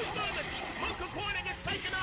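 Mostly a voice talking, with one brief knock near the end.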